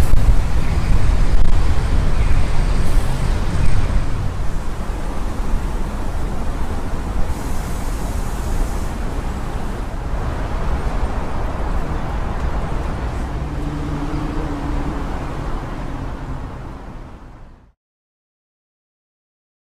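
City road traffic: a steady rumble of cars and road noise, with an engine hum rising briefly about three quarters of the way through, then fading out to silence near the end.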